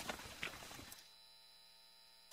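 Near silence with a faint steady electrical hum, after a faint sound that dies away in the first second.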